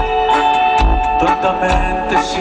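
Live band music played loud over a PA system, heard from within the crowd, with held melodic lines over a steady low beat.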